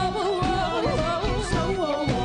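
Live pop band performance: a woman sings a wavering, melismatic lead line over a band of drum kit, congas and keyboards with a steady beat.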